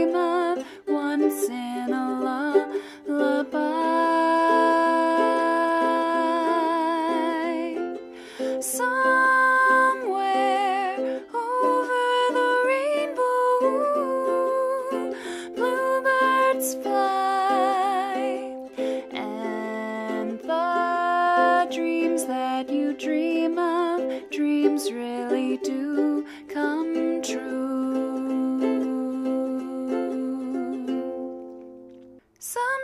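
Music: a strummed ukulele with a voice singing slow, held, wavering notes.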